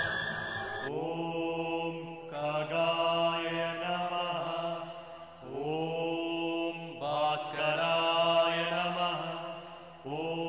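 Background music of long, drawn-out chanted vocal phrases over a steady low drone, each phrase swelling in with a slight upward bend in pitch.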